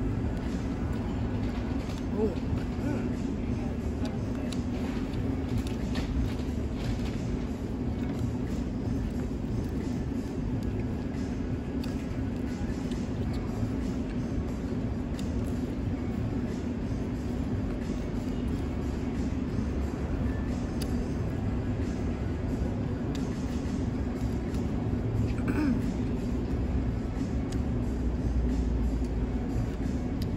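Steady outdoor background noise with a constant low hum, growing a little louder near the end, with a few faint clicks.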